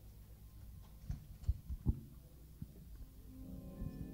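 A few low thumps in the first half, then an organ comes in near the end holding steady chords, the start of the accompaniment for a hymn.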